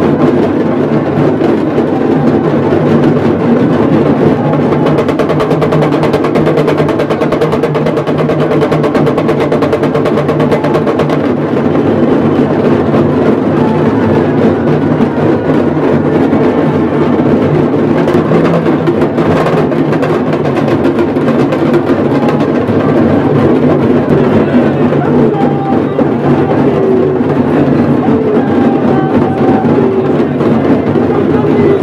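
Loud, continuous percussion music of rapid, rolling drumming, going on without a break.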